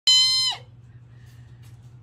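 A single loud, steady high-pitched tone lasting about half a second, dropping in pitch as it cuts off. A low steady hum and a few faint chirps follow.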